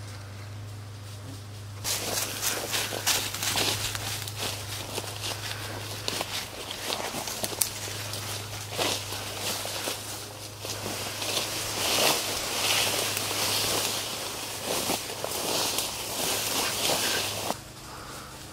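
Footsteps and rustling of leaves and stems as someone pushes through ferns and brush on foot, an irregular crackling that starts about two seconds in and stops just before the end.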